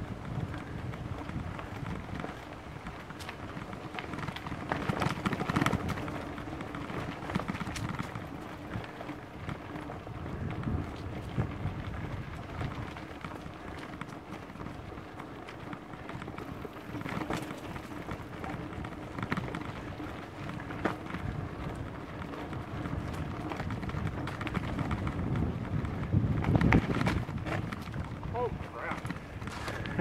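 Mountain bike riding down a dirt singletrack: a steady rolling noise from the tyres on dirt and dry leaves, with frequent rattles and knocks as the bike goes over bumps, louder about five seconds in and again near the end.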